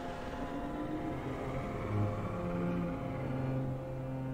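Dark, brooding orchestral score from a TV drama: low sustained notes that shift in pitch every second or so.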